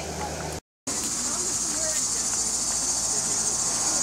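Steady high-pitched chorus of insects, with a brief dropout about half a second in. Before the dropout a low steady machine hum from the PTHP unit's fan is heard.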